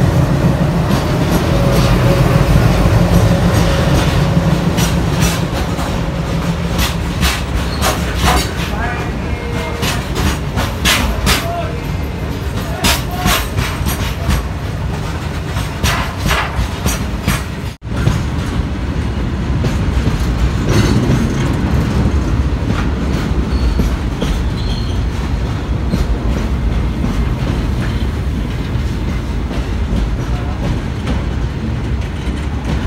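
Twin ALCo diesel locomotives passing close by with a heavy low engine drone. A long rake of covered freight wagons follows, rolling past with repeated clicking of wheels over rail joints.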